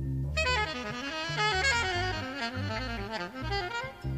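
Jazz saxophone solo: a fast, winding run of notes that starts a moment in and stops just before the end, over bass notes from a big-band recording.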